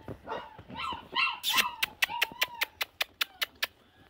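A Boerboel dog yelping and whining, with a quick run of sharp clicks, about six a second, through the second half.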